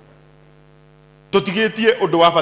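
Steady electrical mains hum through the microphone's sound system, then a man speaking loudly into the microphone from about a second and a half in.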